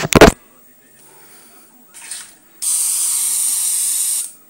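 Airbrush spraying: a short puff of hiss about two seconds in, then a steady hiss of air and paint for about a second and a half near the end.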